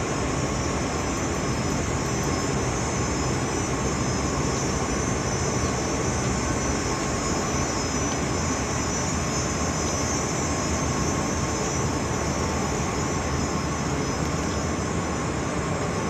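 Steady city background noise: an even, unbroken roar with a faint steady whine running through it.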